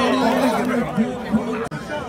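Chatter of a group of young men talking and calling out over one another, with a brief click and dropout near the end.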